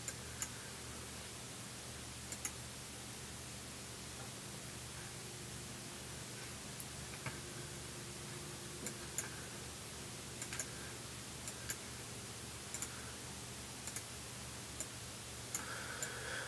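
Irregular, scattered computer mouse clicks over a steady, quiet background hiss and hum.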